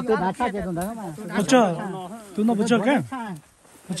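Speech only: people talking back and forth, with a short pause near the end.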